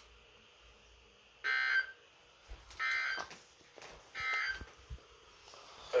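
Weather radio receiver playing the three short Emergency Alert System end-of-message data bursts, which mark the end of the tornado warning broadcast. Each burst lasts about half a second, and they come about 1.3 s apart.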